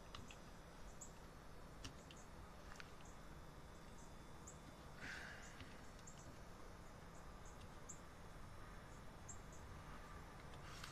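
Near silence: low room hum with faint, scattered clicks from a computer keyboard as a web address is typed.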